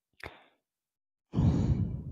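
A person's breath into a close microphone: a brief faint intake about a quarter second in, then a noisy exhale lasting about a second near the end, with no pitch to it.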